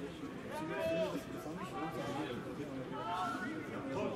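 Several voices talking and calling out at once, indistinct, with two louder shouts about a second in and again near three seconds.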